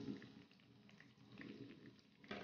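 Batter-coated spinach leaves shallow-frying in oil in a nonstick pan: a faint sizzle with small scattered pops and crackles.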